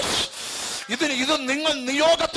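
A man's voice through a microphone holding one long, wavering note in its second half, like a drawn-out sung or chanted word, with a noisy hiss before it.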